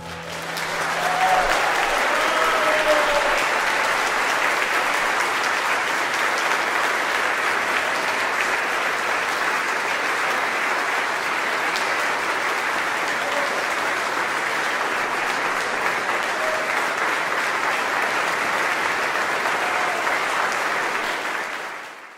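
Concert audience applauding, swelling quickly and then holding steady, with a few faint shouts in the first seconds; it fades out at the very end.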